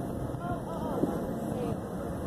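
Wind rumbling on the microphone, with faint distant voices near the middle.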